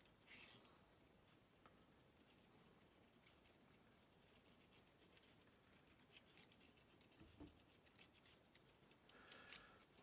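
Near silence, with faint scratching of an alcohol-dampened cotton swab rubbed over a circuit board's contacts.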